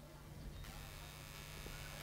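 Faint steady electrical hum with a light hiss from the stage sound system and amplifiers idling between songs, growing slightly about half a second in.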